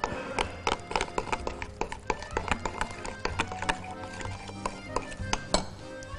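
Metal spoon clicking and scraping against a glass mixing bowl while stirring a wet mix of bread, chickpeas and tahini sauce: a quick, irregular run of clinks, over background music.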